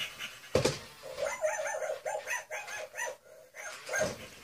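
FurReal Friends toy puppy giving a quick run of short electronic yips and barks from its built-in speaker, about four a second. A single sharp knock comes about half a second in.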